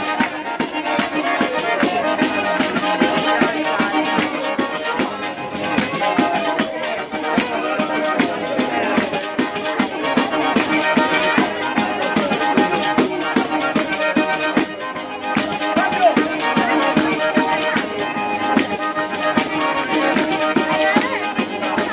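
Tarantella played on a small button accordion (organetto) with a tamburello frame drum keeping a steady, even beat.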